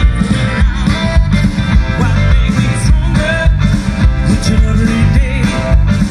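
Live rock-and-roll band playing loudly through a PA: drums, electric bass, electric guitar, saxophone and keyboard, with a singer's voice over the band.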